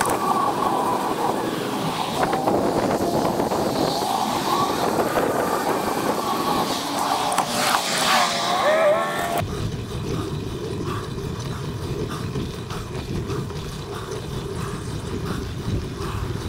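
Wind buffeting the microphone and tyre noise from a bicycle riding over pavement. About nine seconds in, the sound changes abruptly to a lower, steadier rumble.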